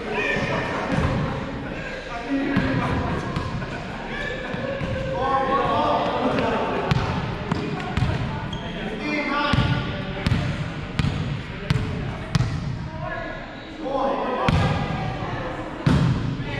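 Volleyball players' voices calling out on an indoor court, with a string of sharp thuds of the volleyball being hit and striking the hardwood floor in the second half, the loudest near the end.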